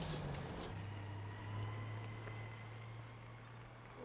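A vehicle engine running with a steady low hum that sets in under a second in.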